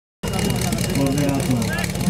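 A man's voice speaking, with a steady engine running beneath it.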